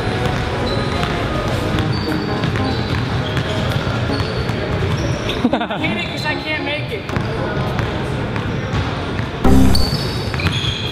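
A basketball bouncing on a hardwood gym floor, with voices and background music in a large echoing gym. There is a loud low thump just before the end.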